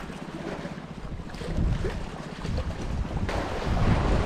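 Wind rumbling on the microphone over a steady wash of sea water.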